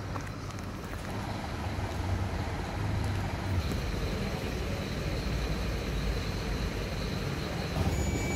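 Steady low rumble of idling or passing motor vehicles with outdoor street noise.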